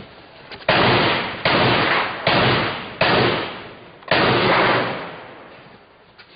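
Five close gunshots, about one every three-quarters of a second with a slightly longer gap before the last. Each is loud and trails off in a long echo.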